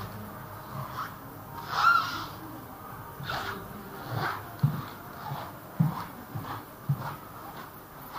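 Footsteps on a hard floor in a quiet indoor hall: several soft low thuds in the second half, about a second apart. There are brief faint higher sounds, the loudest about two seconds in.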